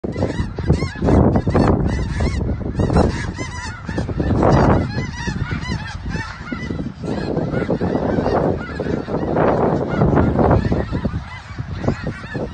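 A large flock of snow geese calling, many short honks overlapping without a break, each rising and falling in pitch, with a low rumble underneath.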